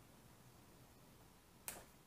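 Near silence, broken near the end by one short, sharp click as the paper is handled.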